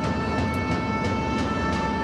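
Basketball-hall ambience during live play: steady crowd noise with a regular beat of about four strokes a second over a few held tones, like music or drumming in the stands.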